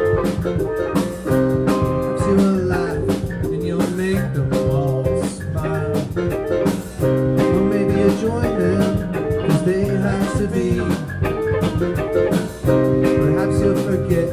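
A live band playing: electric guitars, bass guitar and drum kit, with keyboard, in a steady groove with held notes over regular drum beats.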